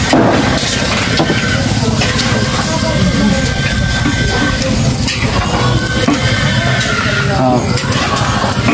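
Indistinct voices of people talking in the background over a steady, dense noise.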